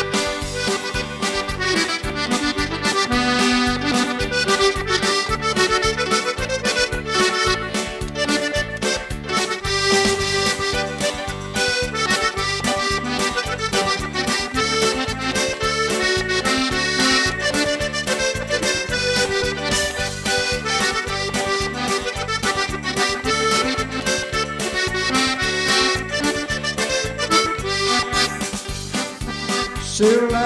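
Accordion music: a lively tune of held reed chords and melody over a steady, even beat.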